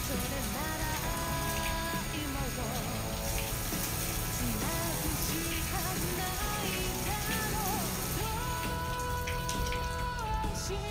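Water running from a tap into a stainless steel sink, under background music with held melodic notes.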